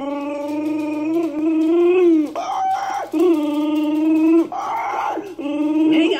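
Three long howling calls, each held steady for a second or two and ending in a falling glide.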